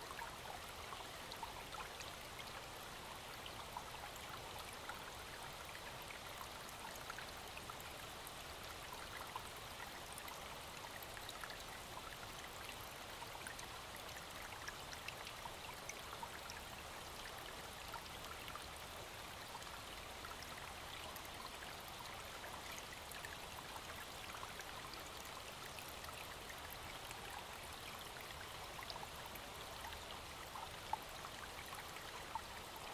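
Faint, steady rush of a forest stream running with snowmelt.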